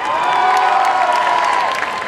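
One voice holds a long drawn-out shout, gently rising and then falling in pitch, over crowd cheering and applause. The shout breaks off near the end, leaving the clapping.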